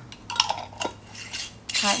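Metal screw lid being put onto a glass jar and twisted shut: a few sharp clinks, then the scraping of the lid turning on the threads.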